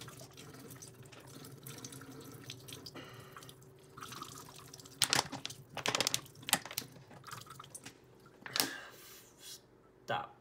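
Thin stream of water running from a partly clogged Sawyer Squeeze filter into a stainless steel sink as a plastic water bottle is squeezed through it. About halfway through come several loud, sharp crackles, with another near the end.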